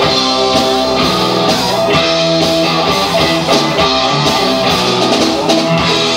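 Live rock band playing loudly: electric guitars and bass over a drum kit keeping a steady beat.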